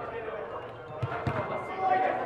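Football being kicked during a small-sided match on artificial turf: two dull thuds about a third of a second apart, a second in, with players' voices in the large dome hall.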